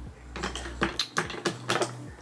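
A quick run of sharp clicks and clatters, about half a dozen in a second and a half, from small plastic makeup containers being handled.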